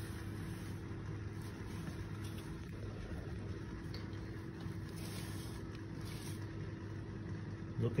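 Steady low background hum with a faint constant tone, with no distinct sounds standing out from it.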